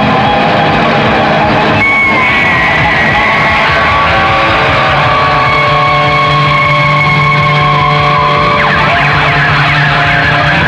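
Loud live rock band playing, with guitar and rhythm section. A high note is held from about two seconds in until near the end, bending slightly at first.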